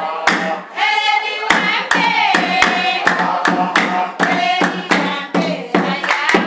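Steady rhythmic handclapping, about three claps a second, accompanying voices singing a dance song.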